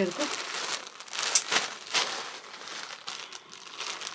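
Clear plastic garment bag crinkling and rustling in irregular crackles as the pink blazer inside it is handled, thinning out near the end.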